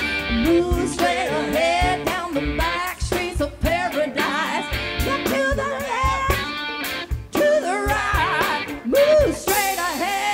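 A live soul-rock band playing, an electric guitar lead over the drums, with singing.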